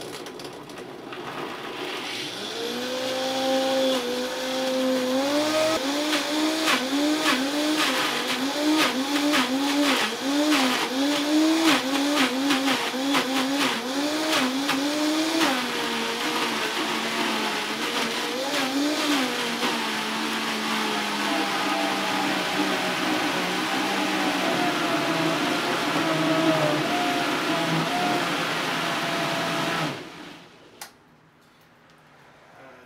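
Vita-Mix blender grinding a packed jar of carrots and other raw produce. The motor spins up over the first few seconds, then its pitch dips and recovers again and again under the load while hard chunks knock and rattle in the jar. After about fifteen seconds the knocking stops and the motor runs more steadily as the produce turns to pulp, cutting off at the end.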